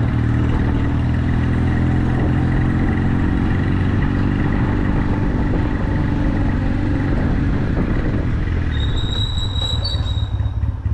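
Motorcycle engine running steadily under way, easing off near the end as the bike slows, with a brief high-pitched squeal about nine seconds in.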